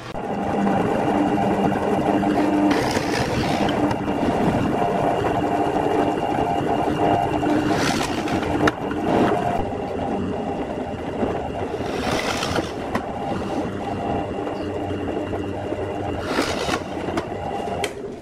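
Drill press motor running steadily, with about four louder surges as the twist bit bores through plywood.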